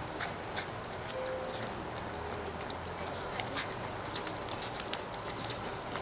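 Footsteps of a stream of runners on a paved path: irregular light slaps of running shoes over steady outdoor background noise.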